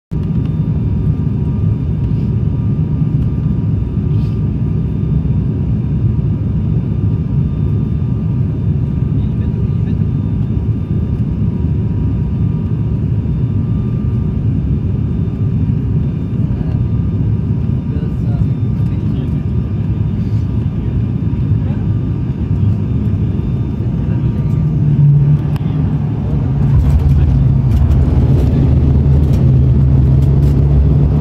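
Cabin noise of an ATR 72-600's twin Pratt & Whitney PW127M turboprops on final approach: a loud, steady low drone with faint steady tones above it. About 25 seconds in the sound grows louder and deeper as the aircraft touches down and rolls along the runway.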